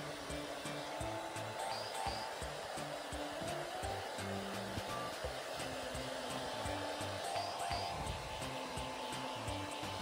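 Hair dryer blowing steadily on a wet Maltese's coat as it is brushed dry, with background music over it.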